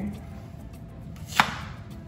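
A single sharp knock about one and a half seconds in: a malanga (taro) root set down on a wooden cutting board.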